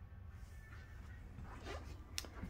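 Faint low rumble with a brief rustle and a few light clicks near the end: handling noise from a hand-held camera being carried and turned.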